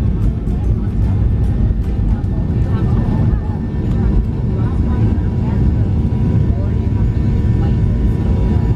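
Boeing 737 jet engines heard from inside the passenger cabin at takeoff thrust: a loud, steady low noise through the takeoff roll and liftoff.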